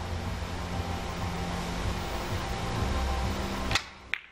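Steady low hum of the hall, then near the end a single sharp click of a cue tip striking a carom billiard ball. The hit sounds a bit strange, enough that the cue tip may be worth checking.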